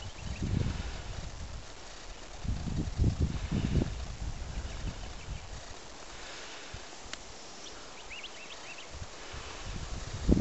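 Wind gusting on the microphone in open heathland, with low buffeting shortly after the start and again from about 2.5 to 4 seconds in. A few faint, short bird chirps come near the end.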